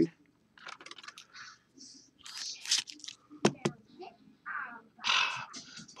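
A trading card being handled and fitted into a clear rigid plastic card holder: light scraping and rustling of card and plastic, with two sharp clicks about three and a half seconds in.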